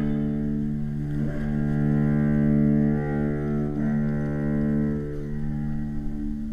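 Bowed strings of a string quartet holding long, low sustained notes together, with the chord shifting slightly a few times.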